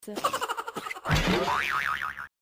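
Cartoon comedy sound effects added in editing: a quick run of twangy pitched notes, then about a second in a springy boing whose pitch wobbles rapidly up and down.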